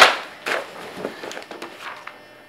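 A sharp smack right at the start, the loudest sound, then a duller thump about half a second in and a run of softer knocks and rustles from a person moving about on an upholstered couch.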